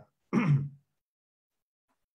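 A man clears his throat once, briefly, about a third of a second in.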